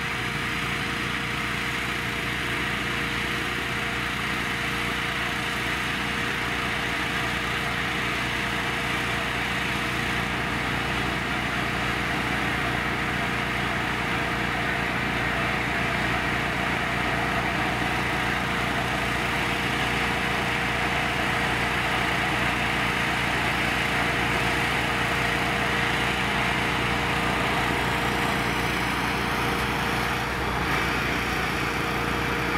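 Fire engine running steadily, a constant engine hum with a steady tone above it.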